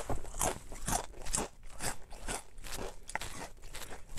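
Ridged potato chips (Ruffles Flamin' Hot BBQ) being chewed close to the mouth: a rapid, irregular series of crisp crunches.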